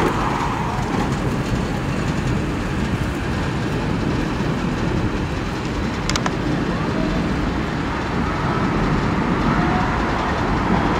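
Steady city street traffic noise: the low rumble of passing and idling vehicles, with one short sharp click about six seconds in.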